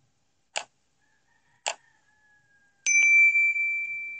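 Sound effects of an animated subscribe-button end screen: two mouse clicks about a second apart, then a bright notification-bell ding that rings on and fades slowly.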